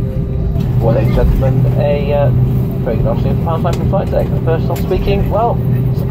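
Steady low hum of an Airbus A319's cabin with its engines at idle as the jet taxis after landing. A crew announcement comes over the cabin speakers on top of it.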